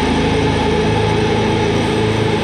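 Heavy metal instrumental passage: heavily distorted electric guitars over rapid, even double-kick drumming, dense and steady throughout.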